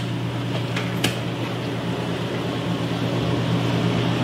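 Steady machine hum with a low drone, and a short click about a second in.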